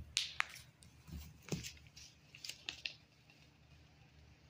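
Paper pages of a handmade book being handled, with a few sharp clicks and soft thumps in the first three seconds, then quieter.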